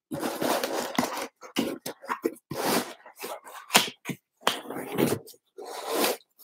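Cardboard box being handled as its contents are pushed back in and the lid pressed shut over a tight fit: a run of irregular scrapes, rustles and a few sharp clicks.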